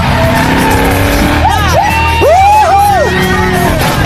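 A race car's engine running hard in a film soundtrack mixed with music. Its tires squeal in several screeches that rise and fall in pitch, from about a second and a half in to about three seconds.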